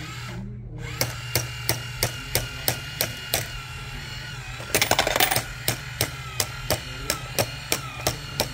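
Toy football coin bank's small motor and plastic gears running as the footballer figure turns, clicking about three times a second over a low hum, with a quick rattle of clicks about five seconds in.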